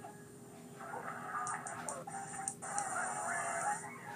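Soundtrack of an animated TV cereal commercial heard through a television's speaker: music with a cartoon voice or sound effect that squawks like a rooster, and a quick run of sharp clicks in the middle.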